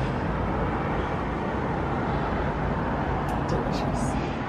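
Steady background rumble of road traffic, even and unbroken, with a few faint ticks near the end.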